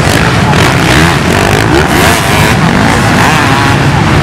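Many off-road motorcycle engines revving together as a pack of enduro bikes climbs the sand dunes. Their pitches rise and fall over one another in a loud, continuous din.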